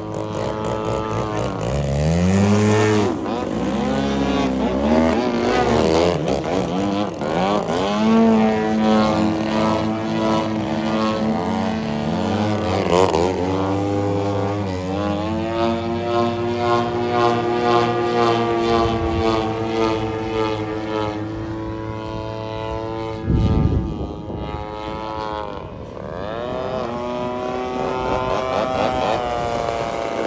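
DLE 130 twin-cylinder two-stroke gasoline engine swinging a Falcon 28x10 propeller on a large-scale RC aerobatic plane in flight, during its break-in. The engine note rises and falls over and over as the throttle changes and the plane passes. A brief low rush of noise comes about three-quarters of the way through.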